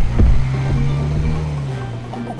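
Cartoon school bus engine effect: a low steady drone that drops slightly in pitch and fades as the bus drives away, over background music.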